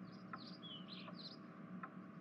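Faint bird chirps, about five short high calls in the first second and a half, over a soft ticking roughly every three-quarters of a second.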